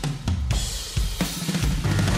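Blues-rock band recording with a driving drum kit of bass drum, snare and cymbals. The bass drops out for about a second while the drums carry on, then the full band comes back in.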